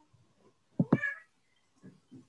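A single short, pitched cry about a second in.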